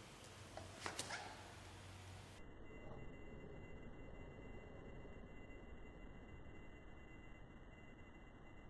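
Near silence: faint room tone, with a couple of faint brief clicks about a second in.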